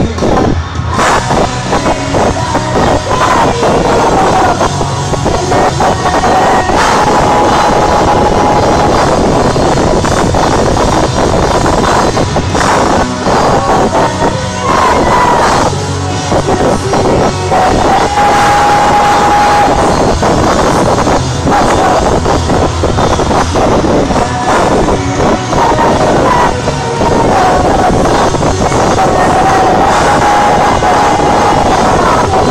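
Rock band playing live through a loud arena sound system, held melody notes over a dense, continuous full-band sound.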